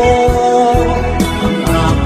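Tagalog song: a singing voice over instrumental backing with a steady bass line.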